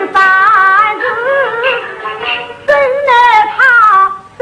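Yue opera music from a 1954 recording: a high, wavering melodic line with vibrato and pitch slides, phrase after phrase without a break.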